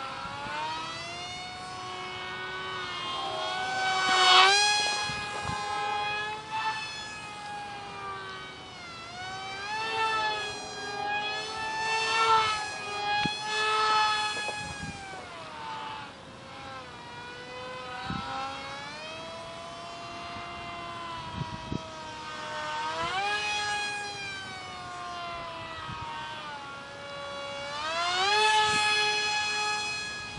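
Whine of a micro RC delta wing's 8mm motor spinning a small direct-drive prop in flight: a high tone with many overtones whose pitch rises and falls, swelling louder several times as the plane comes close.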